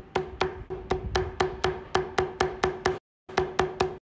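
Metal leather-stamping tool (a pear shader) struck repeatedly with a mallet on leather, a steady run of sharp knocks about four a second with a brief ring on each. The tapping stops abruptly about three seconds in, comes back for a short run, then stops again.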